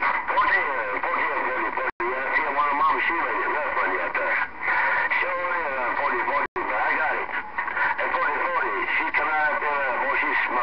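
Garbled, hard-to-make-out voices with static coming over a Galaxy CB radio's speaker, the reception rough. The audio cuts out abruptly for an instant twice, about two seconds in and again past six seconds.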